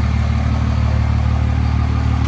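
A pickup truck's engine idling: a loud, steady, deep hum that holds even throughout.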